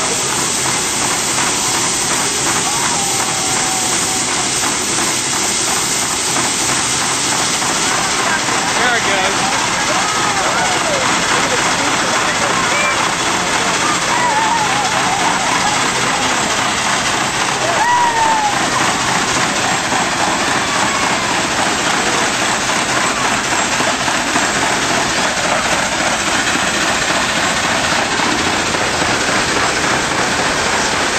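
A 1904 American Extra First Class steam fire engine working under steam: a steady, dense hiss of steam with no let-up.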